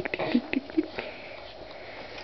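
A quick run of short, breathy 'tik tik' mouth sounds, an adult's playful tickling noises for a baby, packed into the first second, then quiet room tone.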